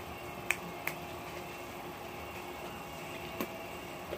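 Steady hum of a window air conditioner running, broken by three short, sharp clicks.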